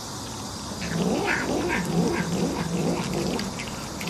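A cat making short, repeated rising-and-falling vocal sounds, about three a second, while chewing on a morsel held in its paws, with faint clicks of chewing between them.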